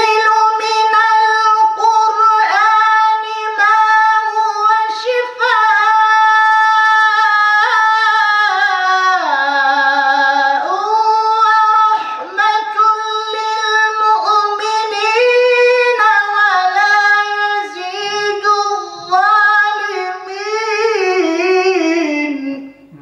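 A solo male voice chanting a Quran recitation in a high, melodic style, holding long ornamented notes with short breaths between phrases. The pitch drops lower about nine seconds in and climbs back about two seconds later.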